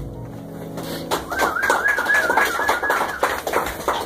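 Audience applause starting about a second in, with someone whistling a single warbling note over it for about two seconds.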